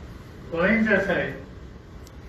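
Only speech: a man says one short phrase into a microphone, with brief pauses before and after it.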